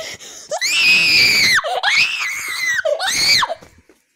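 A person screaming shrilly and loudly, three long high-pitched screams one after another, the last ending about three and a half seconds in.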